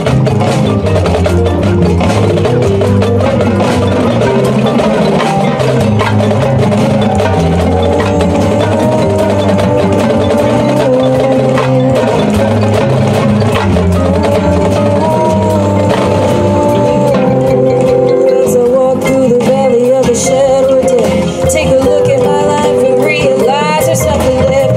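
Marching band front ensemble playing the opening of a field show: mallet percussion such as marimbas over sustained low chords. A held note with a wavering pitch comes in over the second half.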